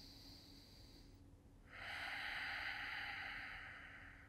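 A man's long, audible breath, starting a little under two seconds in and slowly fading away, taken during a yoga stretch.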